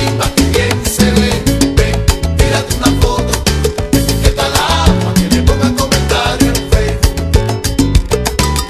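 Instrumental salsa music: a busy percussion rhythm over a bass line, with no singing.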